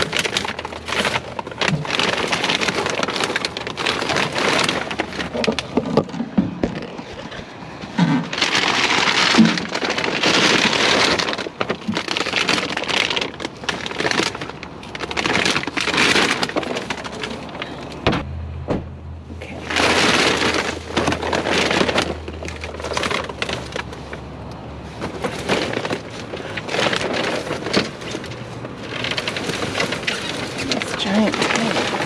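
Plastic bags and packaging rustling and crackling in irregular bursts as trash is shifted around by hand in a dumpster, with small knocks.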